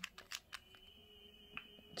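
Small plastic parts of a toy chemistry kit being handled: four quick light clicks in the first half second, then one more about a second and a half in, over near-quiet room tone.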